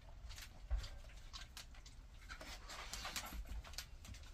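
Dogs moving about on a hard floor and nosing at a mat: a string of irregular small clicks and scuffs.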